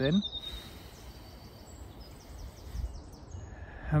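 Birds chirping in woodland, with short high chirps and a quick falling run of notes, over a low uneven rumble.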